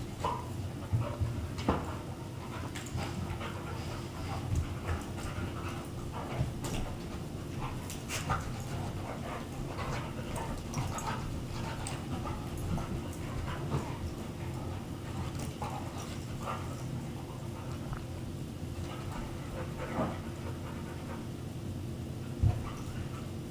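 Two dogs, a Grand Basset Griffon Vendéen and a larger dog, play-wrestling on carpet: panting and scuffling, with short scattered knocks and scrapes, the sharpest in the first couple of seconds. A steady low hum runs underneath.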